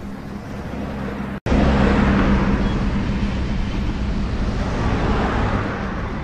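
Road traffic ambience: a steady wash of traffic noise with a low engine hum. It cuts out for an instant about a second and a half in and comes back louder.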